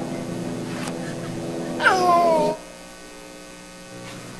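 A baby's voice: one short, high vocal sound about two seconds in that slides down in pitch. It plays over a steady electrical hum that drops away about half a second later, heard as video playback through a hall's sound system.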